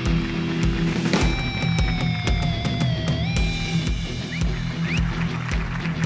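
Drum kit played to a steady beat, bass drum and sharp snare and cymbal hits, under music with a held note that slides slowly down and then jumps back up about three seconds in.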